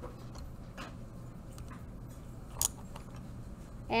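Paintbrushes being picked up and handled on a tabletop: two light clicks, the sharper one over halfway through, over a quiet room with a steady low hum.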